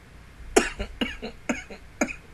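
A person coughing into a hand close to the microphone: a run of four short, sharp coughs about two a second.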